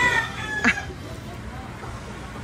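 A rooster crowing. The crow ends within the first second, followed just after by a single sharp click.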